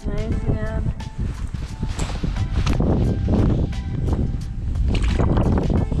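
Wind buffeting the microphone in a loud, continuous low rumble, with scattered light knocks and background music.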